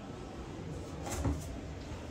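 A short knock with a couple of sharp clicks about a second in, over a steady low background hum.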